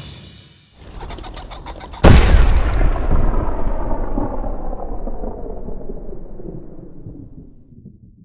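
Gunshot-style sound effect on a logo: a quick rattle of sharp hits, then one very loud boom about two seconds in that rings out and slowly fades over about five seconds.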